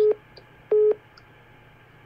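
Two short electronic beeps of the same steady, mid-pitched tone, about three-quarters of a second apart.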